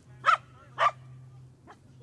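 A dog barking: two loud barks about half a second apart, then a fainter one near the end.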